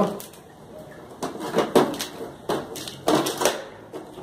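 White plastic container being handled and pried open by hand: a string of irregular plastic clicks and crackles.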